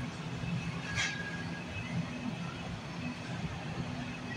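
Supermarket background sound: a steady low hum, with a faint click about a second in.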